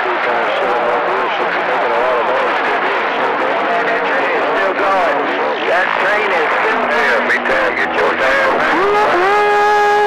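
CB radio receiver on channel 28 picking up long-distance skip: several distant stations talking over one another, garbled and unintelligible in a loud, steady wash of radio noise. A steady whistle comes in near the end and holds for about a second.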